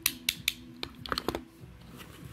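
Painted wooden toy macarons clacking against each other as they are handled: about seven sharp, quick clacks in the first second and a half, then quieter.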